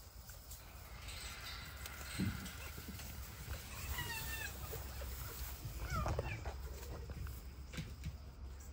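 Red fox giving short, wavering high calls, once about halfway through and again briefly a couple of seconds later, with a few dull bumps and grass rustling.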